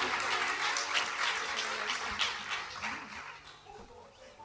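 Small audience applauding at the end of a song, the clapping thinning out and dying away near the end.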